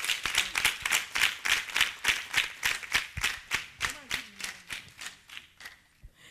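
Hands clapping in a quick, fairly even run of claps that grows weaker and stops near the end.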